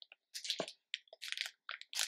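Plastic snack wrapper crinkling in the hands as it is handled and opened, in short irregular crackles.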